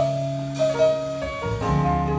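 School jazz band playing live: held chords over a moving bass line.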